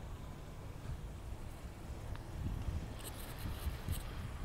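Low, uneven rumble of wind on a phone microphone outdoors, with a few faint clicks near the end.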